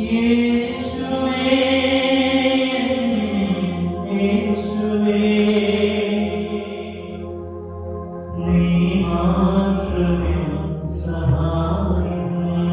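Slow, chant-like devotional music with long held notes that shift pitch slowly over a steady low drone.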